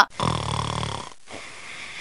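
Cartoon snoring sound effect: one rattling snore about a second long, followed by a quieter breath in.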